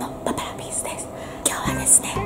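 A woman whispering to the camera, with faint background music under her voice.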